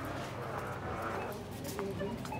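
Footsteps on a hard shop floor, with indistinct chatter of other people in the background.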